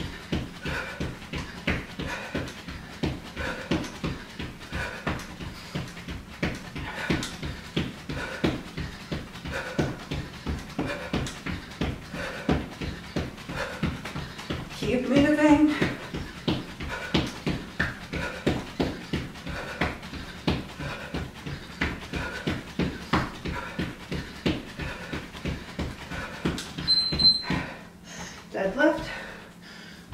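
Rapid footfalls of running in place with high knees on a wooden floor, about three to four steps a second. Just before the end, a short high beep from a Gymboss interval timer signals the end of the round.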